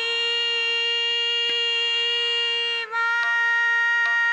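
A woman singing a Hindustani classical vocal line without words, holding one long steady note. The note breaks briefly about three seconds in and is then taken up again at the same pitch.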